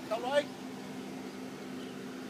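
A steady low mechanical hum, with a short burst of a person's voice at the start.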